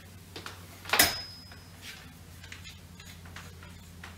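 Handling noises from the Tasco 19T telescope and its storage pier as the tube is unpacked: a few light clicks and one sharp click about a second in that leaves a short high ring, over a steady low hum.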